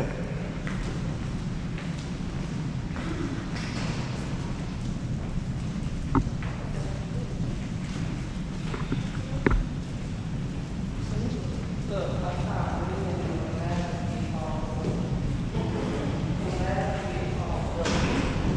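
Footsteps of several people walking on a tiled hallway floor over a steady low rumble, with two sharp knocks about a third and halfway through. Indistinct voices of the group chatter in the last third.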